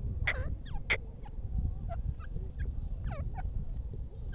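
Grey francolin (teetar) giving a series of short, soft chirping calls that bend up and down in pitch, with two sharp clicks in the first second.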